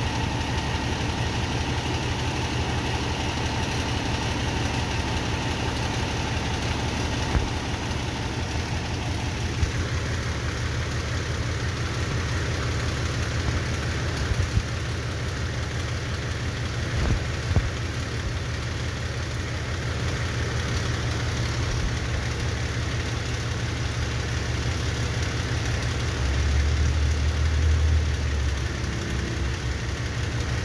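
Fire engine's diesel engine idling, a steady low rumble that grows louder for a couple of seconds near the end, with a few faint knocks.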